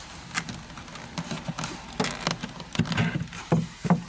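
A string of irregular wooden knocks and clatters as a wooden beehive's bottom panel is taken in both hands and worked loose.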